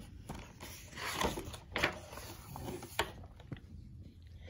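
Paper rustling as a picture-book page is turned and handled, with a few sharper crackles of the page.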